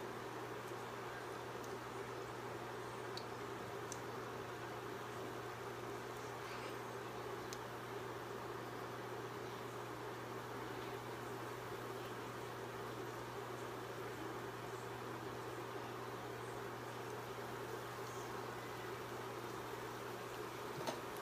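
Battered green tomato slice frying in hot oil: a steady sizzle with a few faint pops, over a constant low hum.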